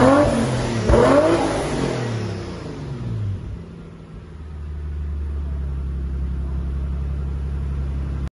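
Garrett twin-turbocharged Lexus IS350 3.5-litre V6 revved in place through its exhaust: a quick blip right at the start and another about a second in, then the revs falling away and settling into a steady low idle from about four seconds on.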